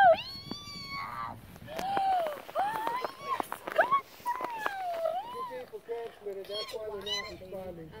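High-pitched, sing-song voices praising a puppy, rising and falling in short calls.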